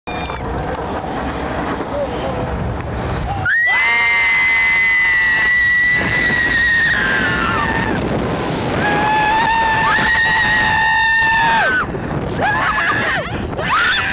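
Roller coaster riders screaming on the ride: a rush of wind and train noise at first, then, about three and a half seconds in, long high held screams from several voices. They break off and start again twice.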